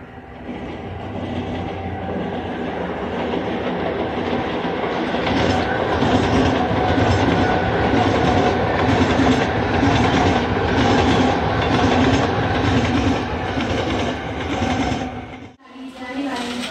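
Electric suburban local train (EMU) running past on the tracks, growing louder over the first few seconds, then a steady run with an even clickety-clack of wheels over rail joints, cut off abruptly just before the end.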